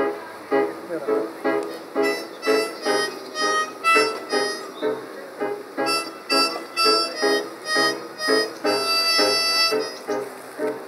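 Blues harp (diatonic harmonica) playing a rhythmic intro of chugging chords, about two a second, closing on a longer held chord near the end, with piano accompaniment.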